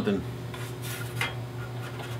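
Faint rubbing and light metallic clinks as hands move over a car's radiator and front core support, over a steady low hum.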